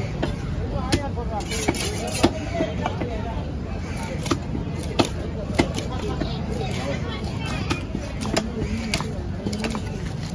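Knife chopping through fish on a cutting block: about ten sharp knocks at uneven intervals, over a steady low rumble and background voices.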